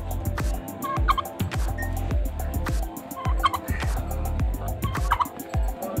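Domestic turkey tom in strutting display gobbling three times, about two seconds apart, over a low rumble.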